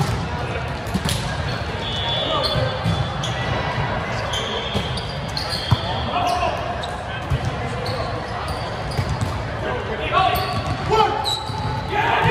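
Volleyball rally on a hard indoor court in an echoing gym: sharp hand-on-ball contacts, the loudest about six seconds in as a player digs the ball, with short squeaks of sneakers on the floor and players' voices calling.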